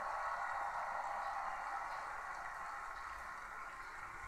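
Steady, even noise of a large stadium crowd that slowly fades, heard thin and narrow through a television speaker.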